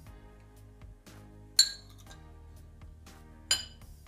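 Metal spoon clinking twice, about two seconds apart, against the glass sauce bowl and ceramic serving dishes as dressing is spooned over roasted stuffed peppers. Each clink has a short bright ring. Quiet background music runs underneath.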